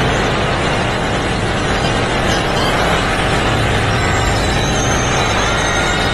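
Loud, dense, steady rumbling noise from a film soundtrack's sound effects, with faint music underneath.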